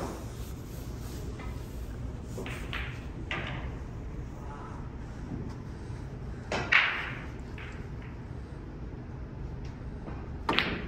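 Snooker hall room tone with a low steady hum, and a single sharp click about two-thirds of the way through.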